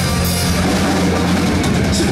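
A heavy metal band playing live and loud: distorted electric guitars and a drum kit, with no vocals, and a quick run of drum hits near the end.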